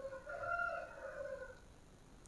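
A rooster crowing faintly: one drawn-out call about a second and a half long that fades out.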